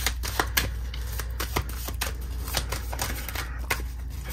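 A deck of tarot cards shuffled by hand: a quick, irregular run of soft card-edge clicks and riffles over a steady low hum.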